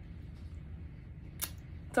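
Quiet room tone with a low hum, broken by a single short sharp click about one and a half seconds in.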